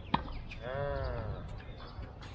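A single sharp knock just at the start, then a person's drawn-out "aah", about a second long, that rises and then falls in pitch.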